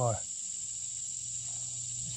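Steady high-pitched insect chorus, an unbroken even drone, with a steady low hum beneath it. A man's voice trails off at the very start.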